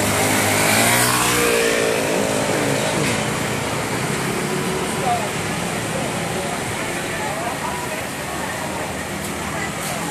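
City street traffic, with a scooter engine passing close by and pulling away in the first couple of seconds, over a steady wash of road noise.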